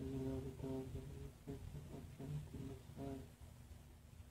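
A short phrase of plucked guitar music, about eight notes in three seconds, stopping just over three seconds in.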